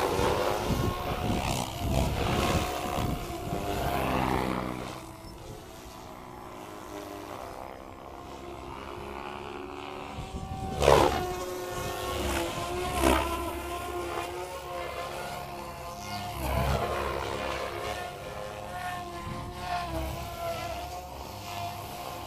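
Electric radio-controlled helicopters (SAB Goblin 700 and Goblin 380) flying: the whine of rotor blades and motor, rising and falling in pitch as they manoeuvre, with a loud swooping pass about eleven seconds in and another about two seconds later.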